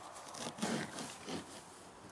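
A kitchen knife chopping fresh young rowan leaves on a wooden board: a few soft cuts about half a second apart, the leaves being cut up and bruised for fermented rowan-leaf tea.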